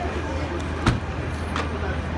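Street ambience: a steady low rumble of traffic with voices in the background, and one sharp knock about a second in, with a fainter click shortly after.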